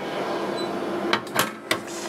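Insulated oven door of an Agilent gas chromatograph swung shut and latching: a few short knocks and clicks a little after a second in, over a steady machine hum.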